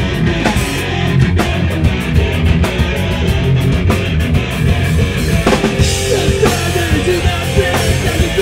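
Hardcore punk band playing live: distorted electric guitars and a pounding drum kit, loud and dense, heard from within the club crowd.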